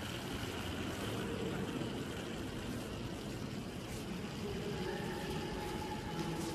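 Steady background murmur and hiss of a large, echoing church interior with visitors moving about. Near the end a faint held tone, like a distant voice, sounds over it.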